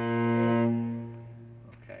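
A single low cello note bowed and held, strong for under a second and then fading away.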